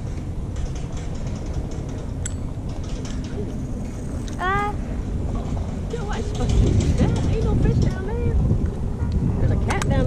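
Wind buffeting an outdoor microphone as a steady low rumble that grows stronger about six and a half seconds in, with brief snatches of voices over it.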